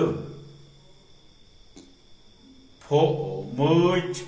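A man's voice resumes speaking about three seconds in, after a quiet pause with only low room tone and a faint steady high whine.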